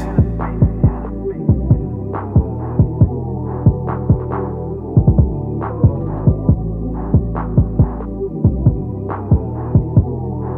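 Instrumental hip-hop beat with no vocals: a deep, sustained bass line under a steady pattern of kick and snare hits. The treble drops away right at the start, so the beat sounds muffled, as if low-pass filtered.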